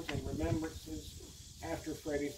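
A man's voice reading aloud.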